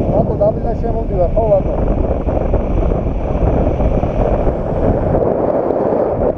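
Wind buffeting an action camera's microphone in flight under a tandem paraglider: a loud, steady rush. A person's short, wavering voice sounds come through it in the first second and a half.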